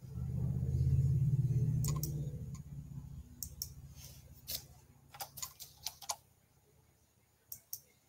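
A low, steady hum that fades away over the first three seconds, then a string of short, irregular clicks, like a computer mouse and keyboard being worked.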